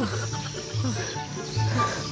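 Background music with a repeating low bass line, over a man's short wailing, crying sounds.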